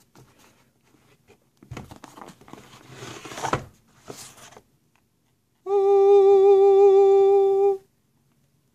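Cardboard box lid scraping and rustling as it is worked off a tablet box. Then a voice hums one steady, loud note for about two seconds, starting and stopping abruptly as the tablet is revealed.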